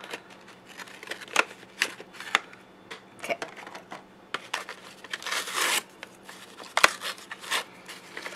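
Hobby knife cutting and scraping into a thick cardboard backing card, then the card being torn open by hand. A few sharp clicks, and a longer scratchy stretch a little past halfway.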